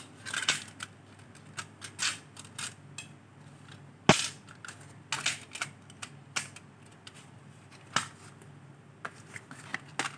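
Clear plastic CD jewel case and discs being handled: irregular light clicks and plastic rattles, with a sharp snap about four seconds in and another near eight seconds.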